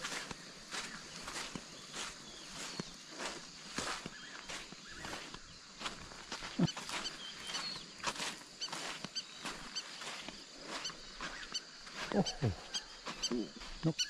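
Footsteps crunching on coarse river sand at a steady walking pace, about two steps a second, over a steady high-pitched hum. A short low call that slides downward is heard about six and a half seconds in.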